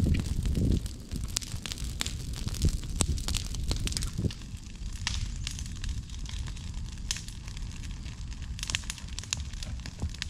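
Brush-pile bonfire burning, with frequent sharp crackles and pops over a low, steady rumble.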